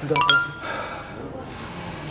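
A short, bright chime sound effect at the start: a quick run of rising bell-like notes, followed by people talking.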